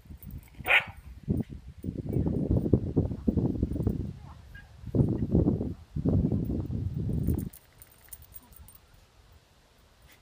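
A small dog growling in play, in rough stretches of a second or two, with a short high yelp about a second in.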